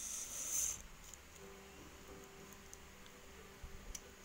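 Faint handling noise from a plastic Beyblade Burst top being pressed and turned in the fingers: a short rustling hiss lasting about a second at the start.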